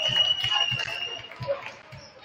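Basketball bounced on a hardwood gym floor, a few thuds a second, under gym chatter, with a steady high tone held for about the first second.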